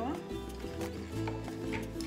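Background music with held tones over a stepping bass line.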